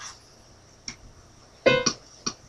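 Electronic keyboard being played: after a brief lull and a faint tap on the keys, two notes are struck in quick succession near the end.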